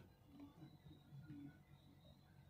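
Near silence: only faint, low background noise.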